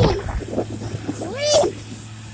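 A person's short, high, cat-like yelp that rises and falls, about one and a half seconds in, over a steady low hum.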